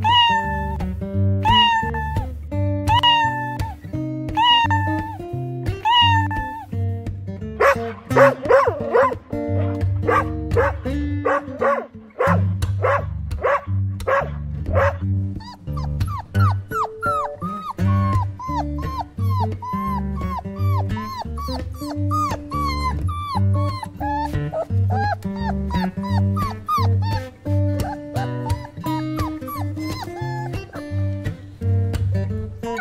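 Background music plays throughout over animal calls. First comes a cat meowing, five calls about a second apart, then a quick run of higher gliding calls. From about halfway on, newborn puppies squeak and whimper in many short, high calls.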